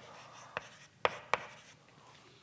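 Chalk writing on a blackboard: three sharp taps of the chalk against the board among faint scratching strokes.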